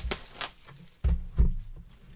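Handling noise from trading cards and a cardboard hobby box on a desk: a couple of sharp clicks, then two dull knocks about a second in.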